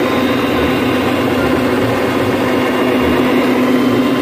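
Counter-rotating brush (CRB) carpet machine running steadily with an even hum, its brushes agitating the high-pH pre-spray into the carpet.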